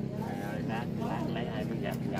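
An engine running steadily in the background, with low voices talking over it.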